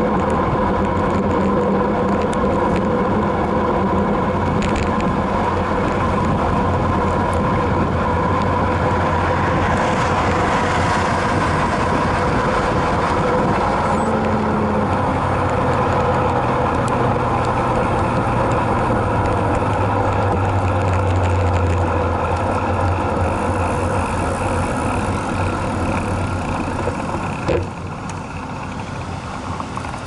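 Steady, loud rushing noise and hum of a road bicycle moving fast, picked up by a bike-mounted camera. It eases off near the end, with a single sharp click.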